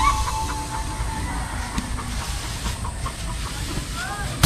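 Outdoor field ambience: faint rustling of cut rice straw being handled over a low wind-like rumble, with a chicken clucking briefly right at the start and again near the end.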